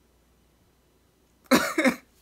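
A man bursts out laughing about one and a half seconds in: two short, loud, breathy bursts after near quiet.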